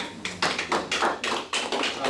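A few people clapping their hands in brief, scattered applause, about six or seven claps a second.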